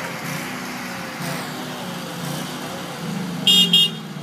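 Heavy construction equipment engine running steadily, with two short high-pitched horn toots in quick succession near the end.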